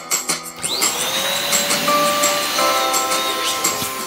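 Electric balloon pump running as it inflates a latex balloon. Its motor whine rises as it starts, about half a second in, and falls away as it cuts off near the end.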